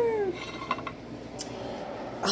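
A spoken word trailing off, then low room noise with a couple of faint clicks from handling.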